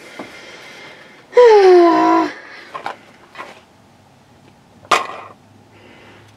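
Handling of a plastic board-game spinner: a soft rustle, a few light clicks, and one sharp plastic click a little before the end. A short, loud hum with a falling pitch from a player cuts in about a second and a half in.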